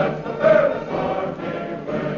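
A choir singing with instrumental accompaniment, with a loud held note about half a second in. It has the thin, narrow sound of an old radio transcription recording.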